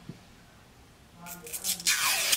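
Plastic lipstick tube being opened by hand: after a quiet second, faint plastic clicks and scraping as the cap is worked loose, ending in a short rush as it slides off.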